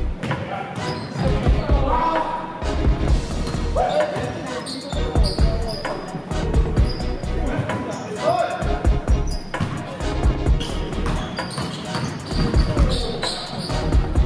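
Basketball game in a gym: the ball bouncing repeatedly on the hardwood court, with players' voices calling out in the echoing hall. Music plays along with it.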